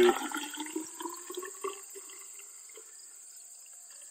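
Water poured from a plastic jug into a plastic graduated cylinder, splashing and gurgling with a pitch that rises as the cylinder fills. The pour tapers off about two seconds in, with a few last drips.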